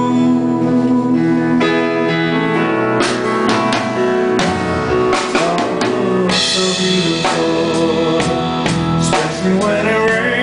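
Live band playing an instrumental passage of a country-pop song: sustained keyboard chords and strummed acoustic guitar, with a drum kit coming in about three seconds in.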